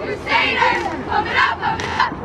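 Cheerleading squad shouting a cheer in unison: short shouted words in a quick, even rhythm, about two a second.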